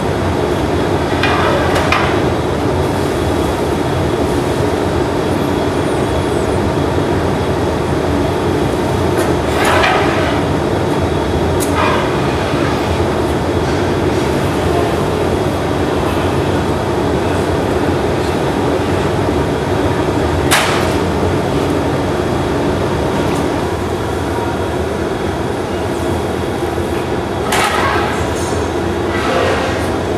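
Steady roar of a glassblowing hot shop's furnace and glory-hole burners, with a few short, sharp clinks scattered through it, the sharpest about two-thirds of the way in.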